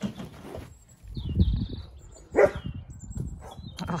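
Dalmatian giving a short yelp about two and a half seconds in, after a brief high squeak about a second in, with low rumbling underneath.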